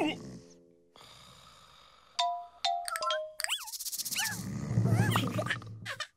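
Cartoon characters making wordless voice sounds: short squeaky calls that slide up and down in pitch, over music and sound effects. A low buzzing rhythm builds under the voices in the last two seconds.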